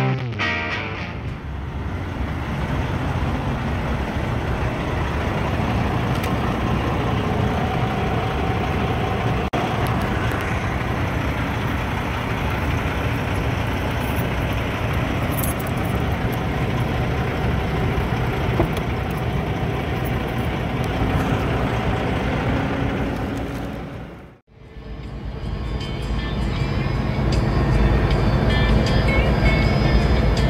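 Semi-truck diesel engine and road noise, a steady rumble. It breaks off sharply for a moment about three-quarters of the way through, then comes back as the truck runs down the highway.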